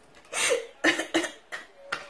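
A woman laughing in several short, breathy bursts.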